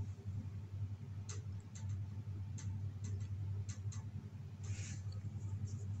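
A low steady hum with faint, scattered small clicks and a brief rustle about five seconds in.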